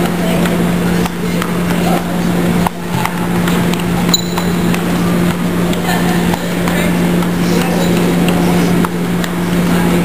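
Ping-pong ball clicking irregularly off a bare plywood board and paddles in a gymnasium, with children's voices in the background and a steady low hum.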